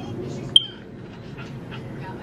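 A single short, sharp high-pitched click or ping about half a second in, over low room noise.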